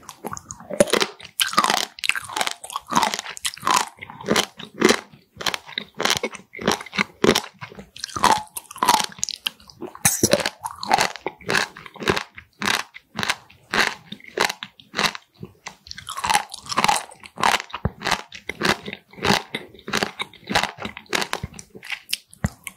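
Close-miked chewing of raw pleated sea squirt (Styela plicata): a rapid, unbroken run of crunchy, wet bites and chews, with a few louder wet stretches along the way.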